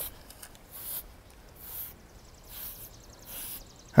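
Grooming tool drawn through a Highland steer's shaggy coat in repeated strokes, a soft scratchy rasp about once a second, pulling out loose shedding hair.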